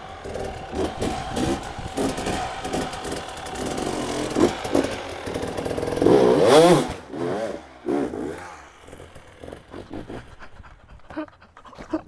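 Enduro dirt bike engine running with repeated throttle blips, then a hard rev that rises and falls about six seconds in as the bike powers up a tall concrete wall. After that it goes much quieter, with a few light knocks.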